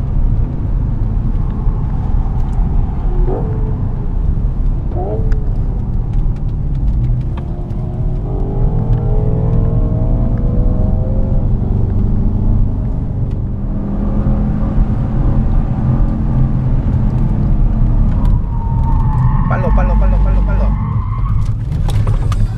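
Porsche Cayenne Turbo's twin-turbo V8 heard from inside the cabin at circuit speed, over heavy road and tyre noise. The engine note climbs steadily under acceleration about eight seconds in, with shorter pitch swings before it.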